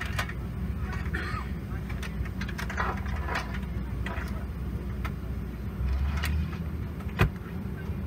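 Steady low hum of a parked Boeing 777-200 airliner cabin, its ventilation running, with passenger voices murmuring and one sharp click near the end.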